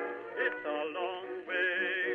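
Music with a singing voice holding long notes with a wavering vibrato.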